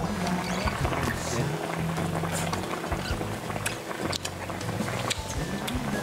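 Background music with long steady low notes and a few scattered sharp clicks.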